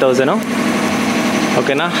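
A man's voice says one word, then a steady machine hum runs on its own for about a second before his voice returns near the end.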